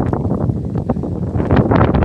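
Wind buffeting a phone's microphone: a loud, uneven rumble that comes in gusts.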